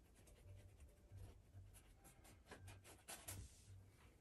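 Faint scratching of a paintbrush working paint on canvas and palette: a run of short brush strokes, most of them in the second half.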